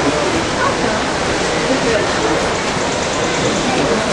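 Steady rush of falling water from a waterfall, with indistinct voices mixed in.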